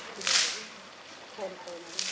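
Water flung from a pan splashing onto a paved road: one sharp splash about a third of a second in that fades over half a second, and a weaker one near the end.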